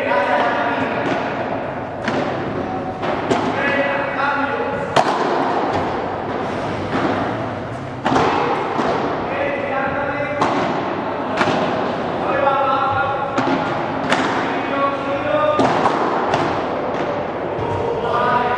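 Padel rally: the ball struck by paddles and bouncing off the court and glass walls, a sharp knock every second or two.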